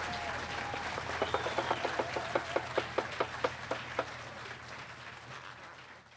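Audience applauding after a song. A few close claps stand out sharply at about five a second, from about a second in until about four seconds in. The applause then fades out near the end.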